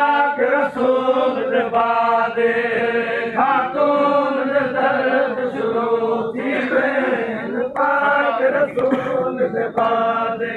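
Male voices chanting in a slow melodic line, long notes held for a second or more with short breaks between phrases.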